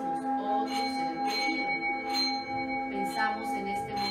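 Small metal singing bowl sung by circling a mallet around its rim: a steady, sustained ringing tone, with higher overtones swelling in under a second in.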